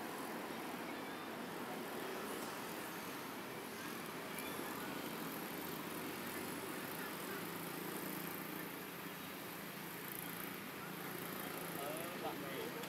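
Steady outdoor background noise, an even hiss and low hum with no distinct events, and a few faint high chirps about four seconds in.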